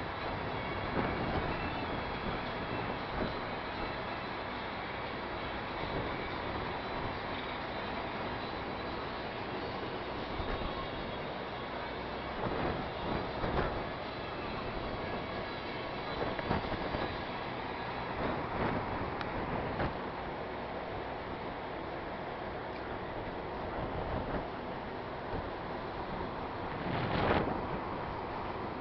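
Thunderstorm: a continuous low rumble with several louder swells, the strongest near the end, typical of rolling thunder.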